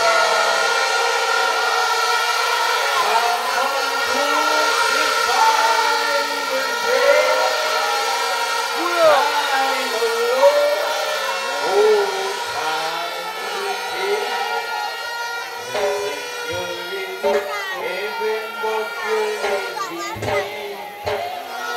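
A man's voice over a public-address microphone, with music and steady held tones behind it.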